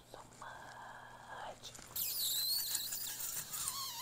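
A woman's whispered, breathy voice, followed from about halfway by a louder, high, wavering sound.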